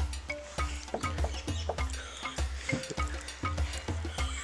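Background music with a steady beat of deep bass pulses and crisp percussion, about two beats a second.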